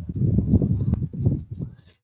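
Muffled, uneven rustling and knocking close to the microphone, from the body moving as the person walks, lasting nearly two seconds and fading out near the end.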